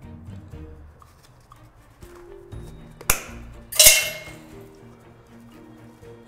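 Side cutters snipping off the excess ends of crimped copper wires: two sharp metallic snips about three seconds in, less than a second apart, the second louder and ringing briefly.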